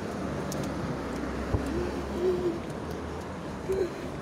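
City street traffic noise: a steady low rumble of cars passing on a busy road, with a few short, low, steady-pitched notes about two seconds in and again near the end.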